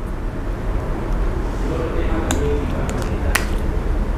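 Steady low hum of room noise, with a faint voice partway through and two sharp clicks in the second half.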